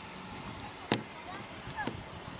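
A single sharp knock about a second in, over low background noise and faint distant voices.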